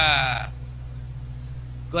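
A man laughing into a handheld microphone: a drawn-out, pitched laugh that breaks off about half a second in. A low, steady background keyboard tone continues under it, and a spoken word starts at the very end.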